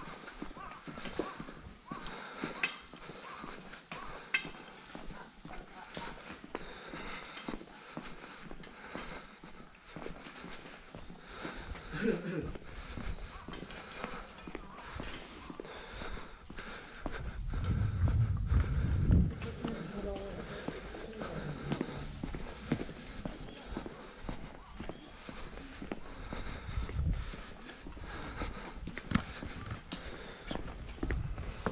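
Footsteps of a person walking along a stone-paved path, a steady run of short hard clicks, with a low rumble for a few seconds around the middle.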